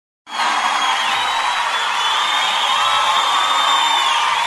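A crowd cheering and screaming, a steady high-pitched wall of voices that starts a moment in and holds level.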